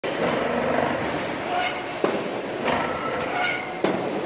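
Cable tray roll forming line running, with steel strip feeding off the coil and through the machine's rollers: a steady machine noise with a sharp metallic knock about two seconds in and another near the end.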